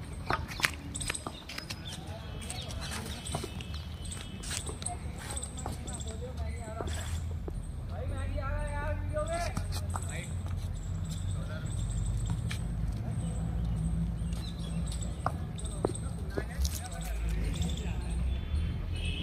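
Open-air ambience of a street cricket game: a steady low rumble on the microphone, a few sharp knocks, the loudest about a second in, and a distant player's voice calling around the middle.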